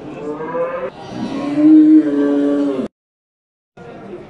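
A bull mooing: a shorter call, then a long, loud, low call beginning about a second in, which cuts off suddenly near three seconds.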